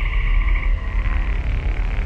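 A frog's rapid pulsing trill call in the first second, over a steady deep bass drone.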